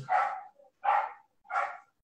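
A dog barking three times in short, evenly spaced yaps, thin, with little low end.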